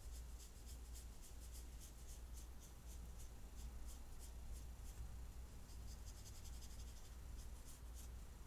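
Paintbrush stroking and dabbing thick watercolour paint onto paper: a run of faint, short, scratchy strokes over a low steady hum.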